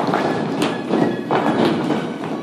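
Dancers' heeled shoes stepping and stamping on a studio floor, several heavy thuds in about two seconds, with music faintly behind.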